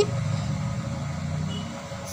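Low rumble of a passing motor vehicle, fading steadily.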